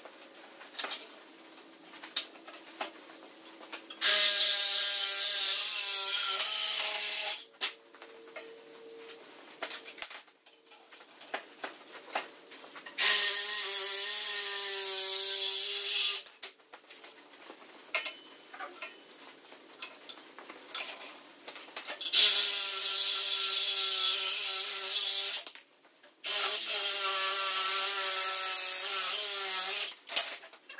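Reciprocating saw (Sawzall) cutting a metal tube held in a vise, in four runs of three to four seconds each: a motor whine with a wavering pitch under the harsh rasp of the blade. Light clinks and knocks of handling come between the cuts.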